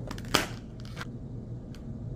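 Clear plastic clamshell packaging being handled and pried open: one sharp crackle about a third of a second in, then a few faint plastic clicks.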